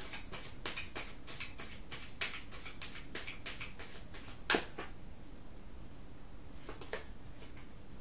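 Tarot cards being shuffled by hand: a quick run of crisp card flicks and slaps for about four and a half seconds, ending in one sharper snap, then a couple of light taps a little before the end.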